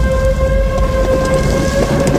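Horror-trailer sound design: a loud rushing, rain-like noise over a deep rumble, with a held high drone of several steady tones on top.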